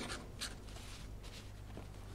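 Quill pen scratching faintly on paper in a few short strokes as a document is signed, over a low steady hum.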